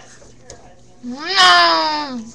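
A cat meowing once: one long, loud call that rises in pitch, holds, then slides back down, starting about a second in.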